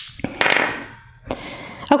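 Small dice being picked up off a hard tabletop and set down onto a tarot card: a brief rustle near the start, then a sharp click a little past the middle and a couple of lighter clicks near the end.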